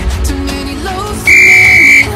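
Background pop music with a steady beat. About a second and a quarter in comes a loud, steady, high-pitched beep lasting under a second: the workout timer's signal for the next exercise to start.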